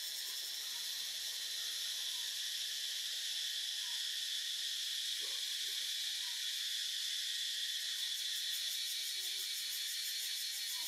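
Steady, high-pitched chorus of insects in the trees, with a fast even pulsing in its highest part.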